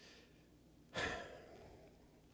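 A man's single short sigh, a breath let out about a second in, then quiet room tone.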